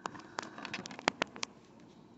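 A quick series of about eight sharp clicks and light taps on hard plastic in the first second and a half, then only faint cabin background.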